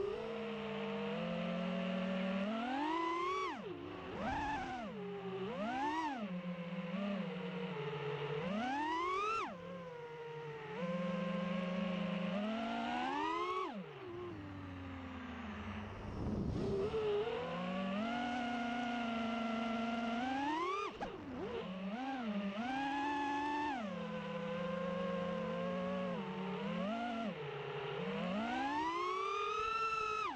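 FPV quadcopter's brushless motors and propellers whining, the pitch climbing sharply with each throttle punch and falling back, about a dozen times, with a brief drop to a low hum around the middle. Heard from the camera riding on the drone.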